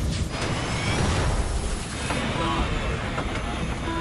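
Dense rushing noise with a deep rumble: reenacted cockpit noise of a Boeing 747 flying through a volcanic ash cloud. Short repeated tones come in about halfway.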